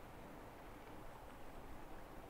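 Faint, steady outdoor background noise with a low rumble and no distinct sounds.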